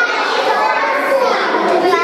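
A roomful of young children talking and calling out all at once, a continuous babble of overlapping voices.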